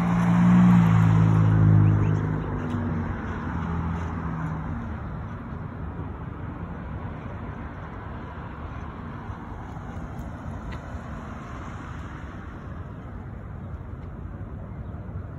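A motor vehicle passes close by on the street, its engine loudest in the first two seconds and fading away by about five seconds in. Steady traffic noise follows.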